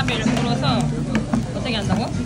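Speech, with a steady low hum under it and a few faint clicks.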